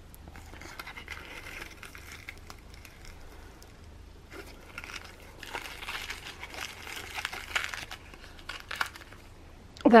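Paper and card packaging crinkling as it is handled and unwrapped. A light rustle comes about a second in, then a louder spell of crinkling past the middle, with a few small clicks near the end.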